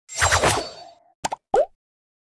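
Cartoon pop sound effects for an animated logo: a quick run of pops that fades away, then two short pops and a final pop with a bending pitch.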